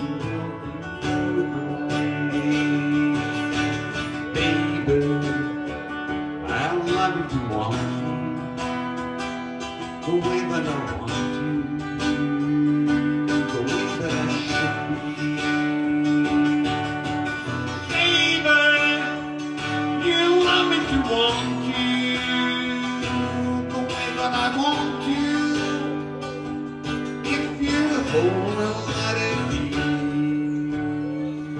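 Live song on acoustic guitar, strummed steadily, with a long-held melody line over it that bends in pitch now and then.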